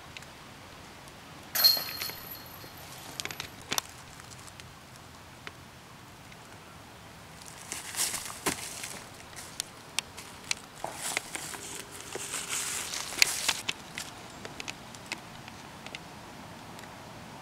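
A disc striking a metal disc golf basket about a second and a half in, with a brief ringing tail. Later, footsteps and shuffling in dry fallen leaves come in two spells as players step into their throws.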